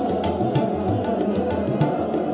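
Hindustani classical drut khayal in Raag Madhuvanti: a male voice singing at a fast tempo over sustained harmonium and tanpura, with a few tabla strokes.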